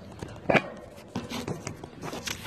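Handling noise of a phone being moved and propped into position: a knock about half a second in, then several lighter taps and rubs against the microphone.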